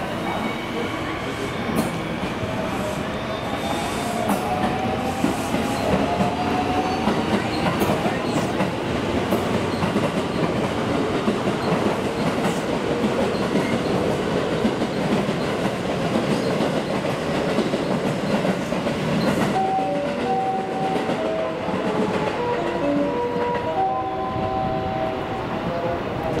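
Electric multiple-unit train running through the station: steady wheel-on-rail noise with a faint rising motor whine as it picks up speed. About twenty seconds in, a short melody of electronic chime tones plays over it.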